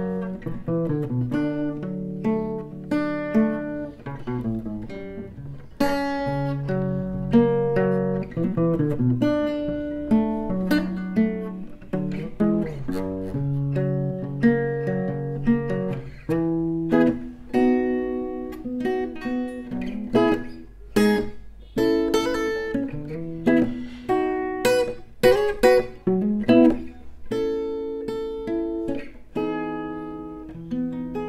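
An inexpensive steel-string acoustic guitar played fingerstyle, a picked melody over bass notes, on old, rusty strings. From about halfway the playing turns more percussive, with sharp strummed chords.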